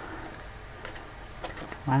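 Faint handling of a cardstock card: a few light ticks and rustles as fingers twist the paper spider on its string to wind up the spinner.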